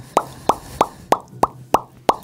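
A repeating plop, about three a second, each a short upward bloop, over a faint steady low hum.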